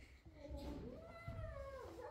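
A single high, drawn-out meow-like cry, about a second and a half long, rising at first, holding, then falling away at the end.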